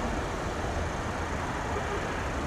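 Steady outdoor background noise with a low, even rumble.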